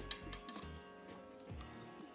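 Soft background music with steady held notes. Over it, a few light clinks of metal spoons against the tin of passata, the sharpest right at the start.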